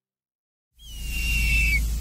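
Silence, then a little under a second in a whoosh sound effect swells in: a deep rumble under a high whistle that slides slightly downward.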